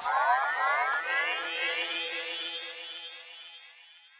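Electronic synthesizer sound effect: a dense swirl of many overlapping pitch sweeps over a low held tone, fading away over about four seconds.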